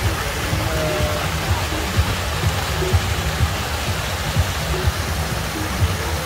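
Plaza fountain jets splashing into a basin and water pouring over its rim, a steady rush. Under it, music plays with a heavy bass beat of about two beats a second.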